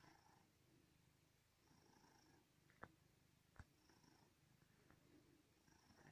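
Domestic cat purring very faintly while kneading a person's back, the purr swelling and easing about every two seconds. Two short sharp clicks near the middle.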